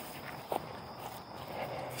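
Footsteps on grass as a person walks with a dog on a leash, quiet and irregular, with one short sharp knock about half a second in.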